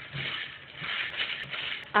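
A hand stirring a steel bowl full of sun-dried flaxseed and masoor dal vadi (tisauri), the hard pieces rattling against each other and the bowl with a crispy sound, with a few sharp clicks. The sound is the sign that the vadi are fully dried.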